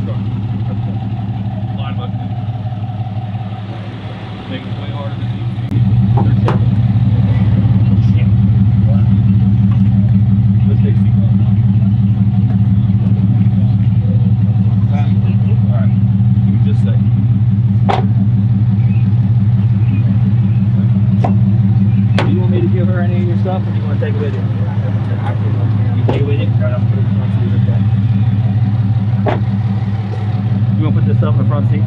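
Patrol car engine idling steadily, louder from about six seconds in, with a few sharp knocks and clicks over it.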